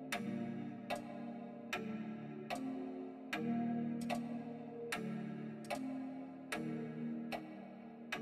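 Quiet outro of an instrumental trap beat: a sustained melody that steps to a new note with each sharp clock-like tick, about one tick every 0.8 seconds, with no bass or heavy drums.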